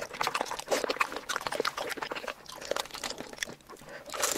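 Close-miked ASMR eating of saucy seafood boil: chewing and mouth sounds in a quick, irregular run of wet clicks.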